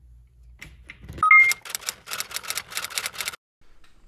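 Two short electronic beeps, the second higher than the first, then a fast run of sharp clacks like typing, about six a second, stopping abruptly.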